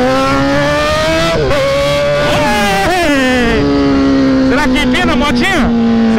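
Motorcycle engine running as the bike cruises, its pitch easing off and picking up again a couple of times with the throttle, under steady wind noise on the helmet microphone.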